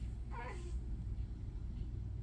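A sleeping calico cat gives one short, wavering cry that slides down in pitch about half a second in, a small meow made in her sleep while dreaming. A steady low rumble lies beneath it.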